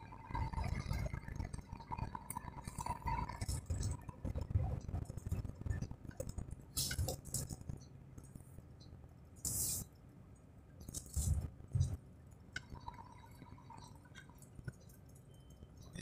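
Inside a truck cab on a winding mountain descent: a low road and engine rumble with scattered clinks and rattles of loose items in the cab.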